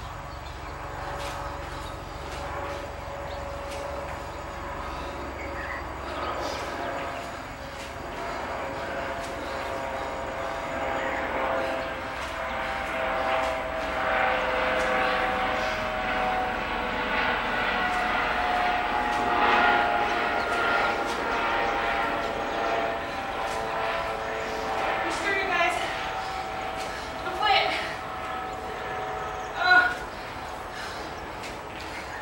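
A distant engine drone with several steady tones, growing louder through the middle and then easing off, with two brief louder sounds near the end.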